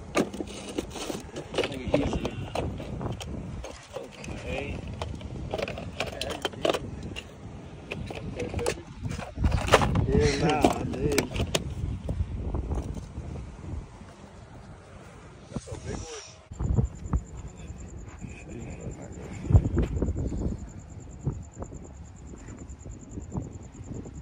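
Indistinct voices with scattered knocks and handling noise. About two-thirds of the way in, after a sudden change, a steady high-pitched tone starts and holds.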